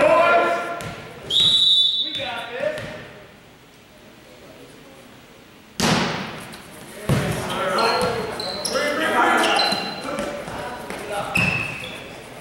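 A referee's whistle blows once, about a second in, over the voices of players and spectators in a gym. A few seconds later a volleyball is struck hard with a sharp smack, and the rally continues with shouting voices, further ball hits and short high squeaks.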